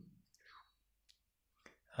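Near silence, broken by a few faint, sharp clicks and a brief faint murmur about half a second in.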